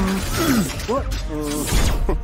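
Cartoon soundtrack: a bright, crash-like sound effect and short sliding vocal or effect sounds over background music.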